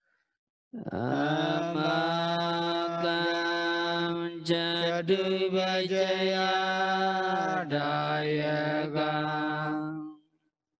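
A Buddhist monk's single voice chanting in long, drawn-out held tones, starting about a second in, stepping to new pitches twice along the way and stopping at the end.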